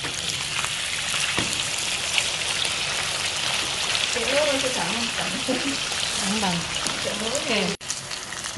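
Slices of sweet beef dendeng sizzling steadily as they fry in hot oil in a wok. The sizzle breaks off abruptly near the end.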